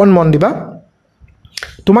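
Speech, broken by a pause of about a second in the middle.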